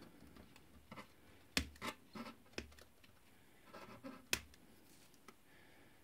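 Side cutters snipping through thin insulated wires: two sharp clicks, about a second and a half in and again past four seconds, with faint handling rustles between.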